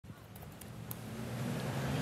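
Street traffic with a motor vehicle's engine growing steadily louder as it approaches.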